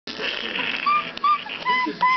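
A young child's short, high-pitched squeals of laughter, several in quick succession from about a second in, after a rustling noise.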